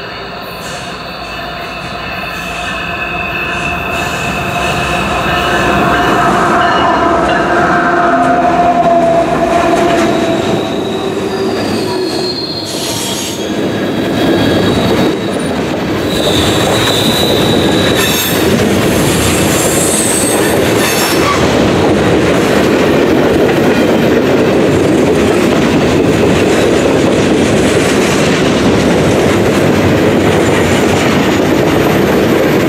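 A CSX freight train led by two GE ES44AH diesel-electric locomotives approaches and passes on a curve, growing louder over the first six seconds. Then the freight cars roll by with a dense rumble and wheel clatter on the rails, and steel wheels squeal against the rails on the curve.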